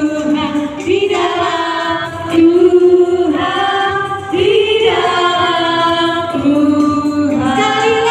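A group of voices singing a birthday song together in long held notes. A woman's amplified voice leads, with children singing along.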